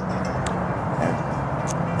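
Steady outdoor background noise with a low rumble and no speech.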